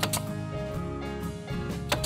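Bostitch pneumatic nail gun firing sharp shots into wooden trim: one or two right at the start and another near the end, over steady background music.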